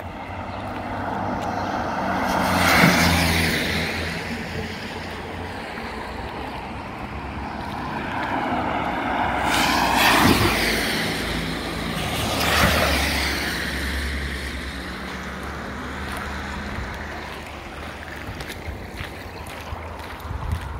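Cars driving one after another through floodwater on a road, their tyres hissing and spraying as each one passes, over the low sound of their engines. There are three passes, rising and fading, the loudest about ten seconds in.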